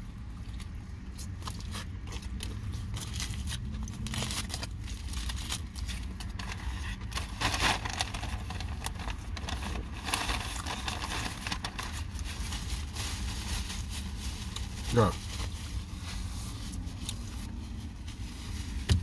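A person chewing a mouthful of cheeseburger, with wet mouth clicks and the crinkle of its foil wrapper, over a steady low rumble from inside a car.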